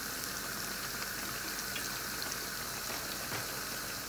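Hot oil sizzling and bubbling steadily around moong dal fritters (mangochiyan) deep-frying in a pot.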